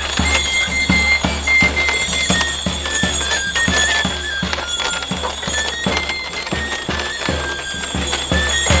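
Pipe and drum playing a processional tune: a high, whistling pipe melody stepping between notes over steady drum beats, about three a second.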